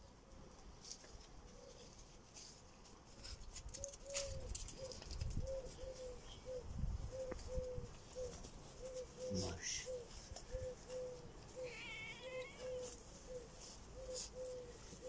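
A short, low call repeated steadily about twice a second, likely an animal calling in the background. Low rumbles of wind or handling on the microphone come a few seconds in, and a brief higher warbling trill comes near the end.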